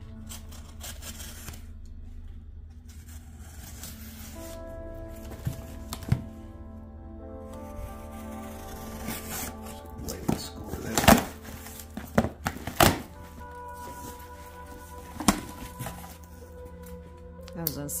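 A Benchmade Adamas folding knife slicing through the packing tape on a cardboard box, giving a series of short sharp cuts and tape rips, clustered around the middle and loudest about eleven seconds in, over steady background music.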